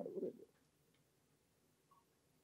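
A man's voice at a microphone trailing off on the last syllable of a sentence within the first half second, then near silence: room tone, with one faint short tone just before the end.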